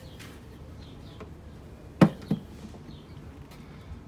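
Two knocks about a third of a second apart, the first sharp and loud, from the parts of a truck's fuel water separator being handled, over a steady low hum.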